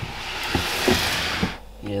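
A clear plastic snake tub being slid out of its rack: a steady scraping hiss lasting about a second and a half, with three light knocks, then stopping.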